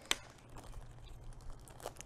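Faint crinkling and rustling of small packets being unwrapped by hand, with a sharper crackle right at the start and another near the end.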